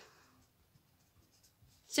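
Very faint scratching of a pen writing on paper.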